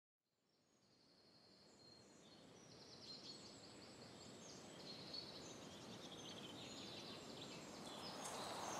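Faint woodland ambience with many small birds chirping and singing over a soft outdoor hiss, fading in from silence about two seconds in and slowly growing louder.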